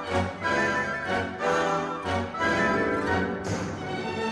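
Orchestra playing classical ballet music with strings prominent and regularly accented beats.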